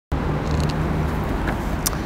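Steady city road-traffic rumble with a low engine hum, and a few faint ticks near the end.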